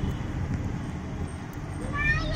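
Steady low rumble and road noise of a moving vehicle, heard from inside it.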